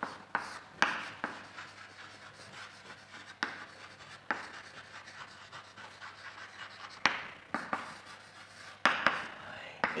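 Chalk writing on a blackboard: scratchy strokes with sharp taps as the chalk strikes the board, the loudest taps near the start, in the middle and about seven seconds in.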